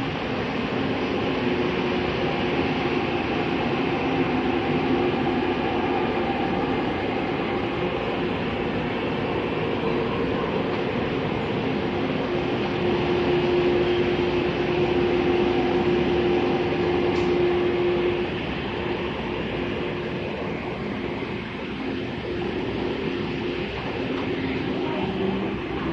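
Taiwan Railway EMU300 electric multiple unit departing, its passing cars making an even running hum over wheel-on-rail noise. A few steady tones sit in the hum, and one of them grows strongest for about five seconds past the middle.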